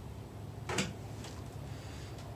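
A dog stepping into a shallow plastic kiddie pool: one short knock-and-splash a little under a second in, then a couple of faint ticks, over a steady low outdoor rumble.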